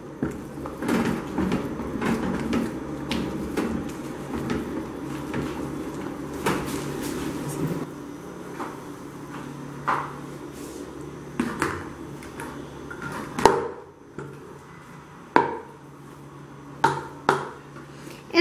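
A metal spoon scraping through thick, creamy chicken filling in an aluminium pot. Later the filling is scraped out into an aluminium baking tray, with several sharp knocks of the spoon against the metal in the second half.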